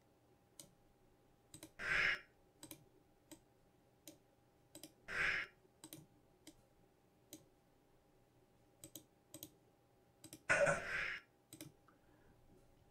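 Computer mouse clicking, scattered single clicks while editing on a timeline. Three brief louder rushes of noise stand out among them, about two, five and ten and a half seconds in.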